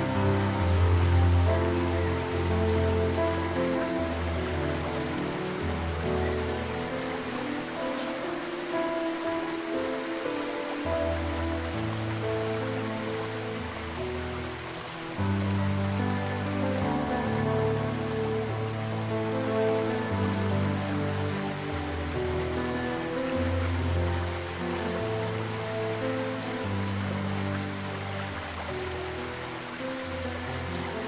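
Slow, soothing piano music with held bass notes changing every second or two, over the steady rush of a waterfall.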